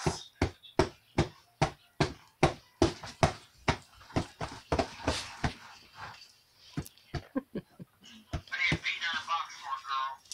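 A baby slapping a cardboard box with her hands: sharp hollow hits at about two to three a second for the first six seconds, then fewer and more scattered. Near the end a baby's voice squeals and babbles.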